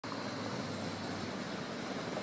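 Steady noise of street traffic, an even hum with no distinct events.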